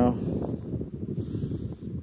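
Wind buffeting the microphone, a steady low rush of noise.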